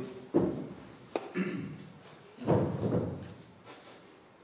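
A few dull thuds and knocks in a large hall: a sharp loud knock about a third of a second in, a click a second in, and a heavier thud around two and a half seconds.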